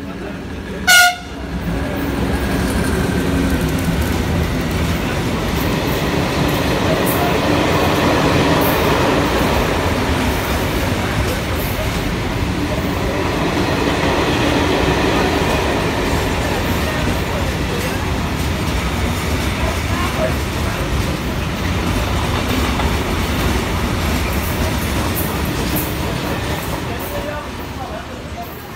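Captrain CAF Bitrac freight locomotive sounds one short, high horn blast about a second in. It is followed by the loud, steady rumble of the locomotive and a long train of covered freight wagons running past on the rails, fading slightly near the end.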